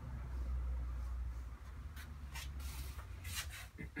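Paintbrush dragging over watercolour paper, with a few short strokes in the second half as a dark line is drawn.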